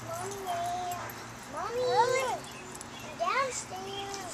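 A young child's high-pitched whining vocal sounds: a held note early on, then a few short whines that rise and fall.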